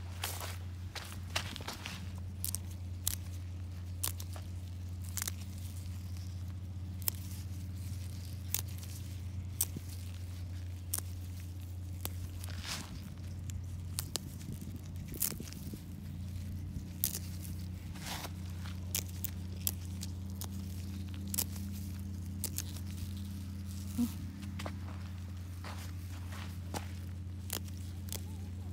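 Footsteps on dry sandy soil, then a gloved hand rustling and snapping feathery dill stems while picking them: scattered short crunches and clicks over a steady low hum.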